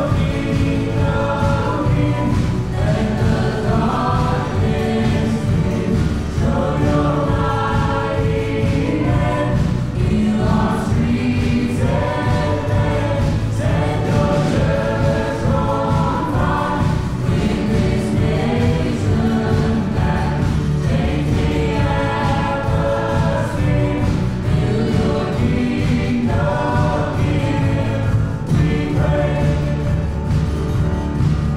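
Live contemporary worship song: several voices singing a melody together over a band of drums, bass guitar, acoustic guitar and piano.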